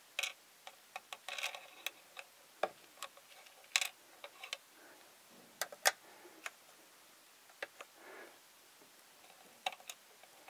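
Tiny plastic toy cookies and trays clicking and tapping as they are set into place on a miniature shop counter: irregular light clicks, the sharpest a little before four seconds in and about six seconds in.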